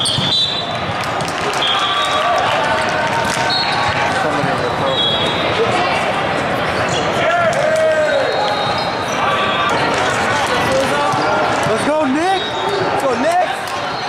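Din of a large indoor volleyball tournament hall: many overlapping voices, volleyballs being struck and bouncing, and several short, high referee whistle blasts from the surrounding courts.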